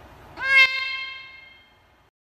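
A white cat lets out a single short meow that rises sharply in pitch, then cuts off abruptly. The cry's tones ring on and fade away over about a second.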